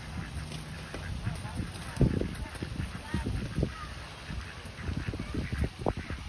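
A flock of white domestic ducks and mallards quacking: short, low calls in repeated clusters, the loudest about two seconds in.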